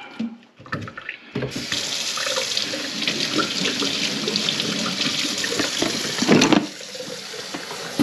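Kitchen tap turned on about a second and a half in, water running steadily into the sink and down the drain being tested after unclogging. A short, louder low sound comes about six seconds in, after which the water runs more quietly.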